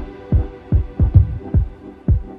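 Electronic broken-beat track: deep kick drums, each sliding down in pitch, in an uneven pattern of two to three a second, over a faint fading synth chord.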